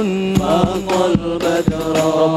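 Male voices singing an Arabic sholawat through microphones, backed by rebana frame drums. The drums strike several times at an uneven beat under the held, gliding melody.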